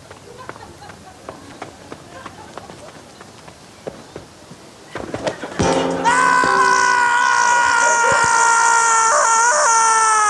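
Soundtrack of a TV cricket advert played through a hall's speakers: faint backyard sounds with small clicks, then a knock about five and a half seconds in. It is followed by a loud held note with several overtones and a hiss, which sinks in pitch near the end.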